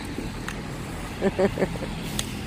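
Steady street traffic noise from cars on a wet road, with a brief burst of a person's voice about a second in.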